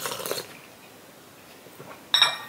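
A short slurping sip of hot tea from a porcelain cup, then a quiet room, with a light tap near the end as the cup comes down toward its saucer.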